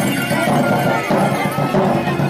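Traditional procession music played live in the street: a hand-carried drum beating under a high melody of short held notes, with crowd voices mixed in.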